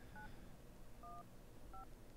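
Phone keypad dialing tones: three faint, short two-tone beeps, one key press each, spaced under a second apart.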